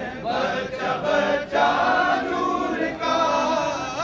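A crowd of men chanting in unison, a devotional chant sung in phrases of about a second and a half.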